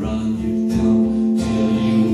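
Acoustic guitar strummed in a blues tune, with a man's voice holding one long note over it.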